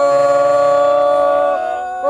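Several men's voices holding a long, steady "aaah" together on more than one pitch, chanting to urge on an eater. The held notes fade out briefly near the end and start again just after.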